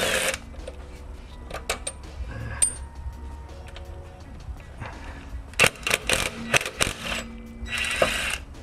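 Cordless 18V impact wrench hammering CV shaft flange bolts loose in short bursts: one at the start, a run of sharp knocks about six seconds in, and another burst at the end. Quiet background music plays underneath.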